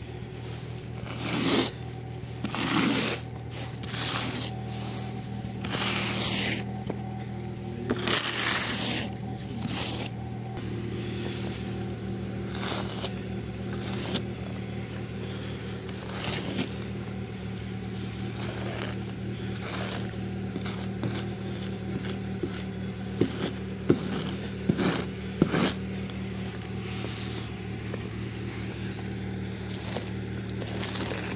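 Snow brush sweeping and scraping snow off a car's body and glass: a run of loud swishing strokes in the first ten seconds, softer strokes after, and a few sharp knocks about three quarters of the way through. A steady low hum runs underneath.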